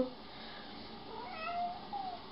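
A cat giving one short meow about a second in.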